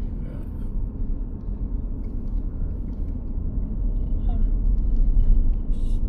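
Low, steady rumble of a moving car, road and wind noise, heard from inside the cabin. It grows somewhat louder in the second half.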